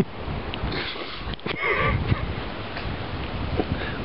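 Wind rumbling on a handheld camera's microphone with rustling handling noise, and a short breathy vocal sound about halfway through.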